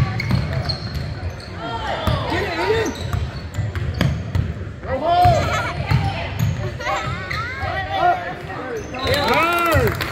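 Basketball game in a gym: a ball dribbled and bouncing on the hardwood court, with voices calling out across the hall and a sharp knock about four seconds in.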